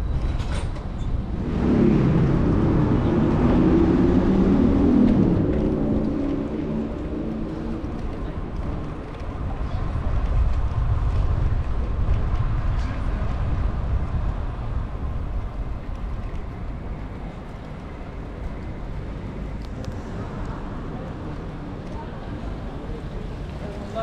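City street ambience: a steady low rumble of traffic, swelling as a vehicle passes close in the first few seconds and again briefly later, with voices of people on the street.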